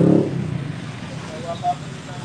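A passing motor vehicle's engine hum, fading out early on, leaving quieter street background noise with a faint short voice-like sound about one and a half seconds in.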